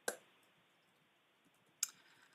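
Near silence with faint room hiss, broken by two brief sharp clicks, one at the very start and one near the end.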